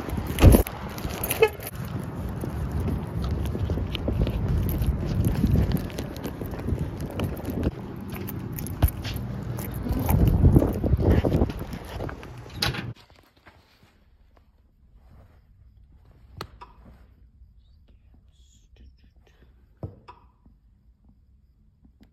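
Dense rustling handling noise and outdoor rumble on a handheld phone microphone, with repeated bumps and knocks. About 13 seconds in it cuts off suddenly to quiet room tone with a few soft taps.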